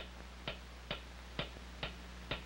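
Mechanical clock ticking steadily, about two ticks a second, over a faint low hum.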